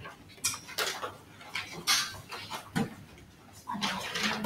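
Scattered short rustles and light knocks of papers and small objects being handled at classroom desks, coming at irregular intervals.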